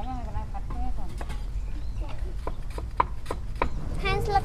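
Cleaver chopping lemongrass on a round wooden chopping block: a run of sharp knocks, about two or three a second, starting about a second in.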